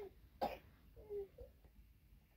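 A single sharp cough about half a second in, followed just after a second by a brief, short vocal sound.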